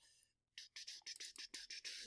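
Near silence with a run of faint, irregular small clicks and ticks from about half a second in.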